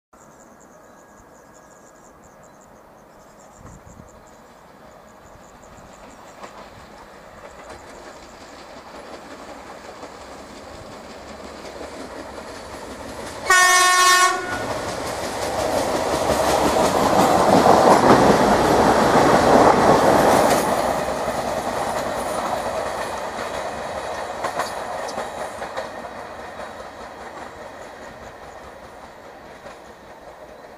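TFC DH2 diesel railcar approaching and passing, sounding one short horn blast about halfway through. Its engine and wheels on the rails then swell to a loud rumble with some clatter over the rail joints, and fade away near the end.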